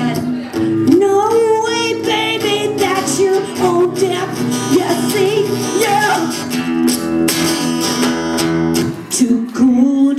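A woman singing with a wavering vibrato while strumming an acoustic guitar, amplified through a microphone and speakers. About nine seconds in the guitar stops and her voice carries on alone.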